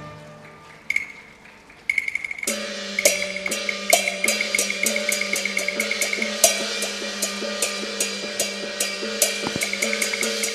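Cantonese opera percussion comes in about two seconds in, playing a steady beat of sharp strokes, about three to four a second, over a held ringing tone, as music for the curtain call.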